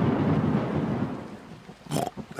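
Thunder sound effect, a loud rumbling crash over rain, strongest at first and dying away over about a second and a half.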